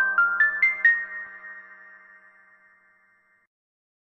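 Musical logo jingle ending: a quick run of chime-like notes climbing in pitch, about five a second, lands on a high note that rings and fades away over about two seconds.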